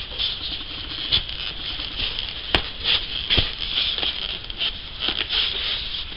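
Cardboard box and a handheld radio being handled and fitted into the box: irregular rustling and scraping, with a few light knocks and one sharp click about two and a half seconds in.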